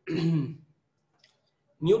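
A man clears his throat once, briefly, then speech resumes near the end.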